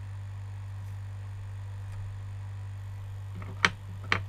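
Steady low electrical mains hum, with one sharp click near the end.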